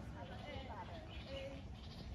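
Faint voices of people talking in the background, with pitch that rises and falls in short broken phrases, over a steady low rumbling noise.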